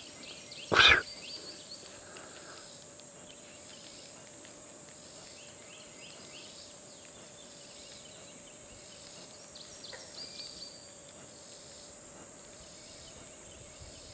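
A fishing rod cast with a tiny, light spoon lure: one short whoosh about a second in. Faint steady insect chirring follows.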